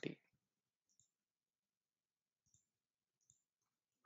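Near silence with three faint computer mouse clicks, spread across the few seconds.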